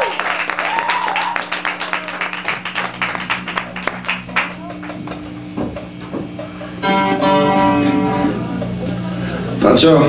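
Electric guitar through a stage amplifier with a delay effect: a fast, even string of repeating clicks that fades away over about four seconds, then a chord rings briefly, over a steady low amplifier hum. The band calls the delay deliberate.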